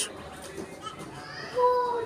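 Children's voices chattering in the background, with one child's voice holding a single drawn-out note near the end.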